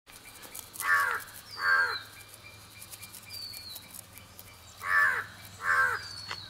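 A crow cawing in two pairs of harsh calls, the first pair about a second in and the second near the end. Thin, falling whistles from another bird come in between.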